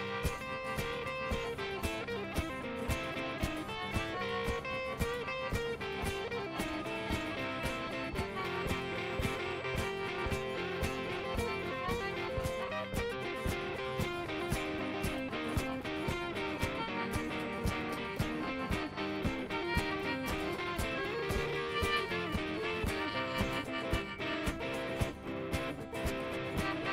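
Instrumental break of a folk-blues tune: acoustic guitar strummed and a hollow-body electric guitar picked, with a rack-held harmonica playing a wavering melody line over them.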